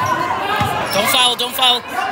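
Basketball dribbled on a hardwood gym floor, bouncing twice in the first second, with voices calling out in the gym.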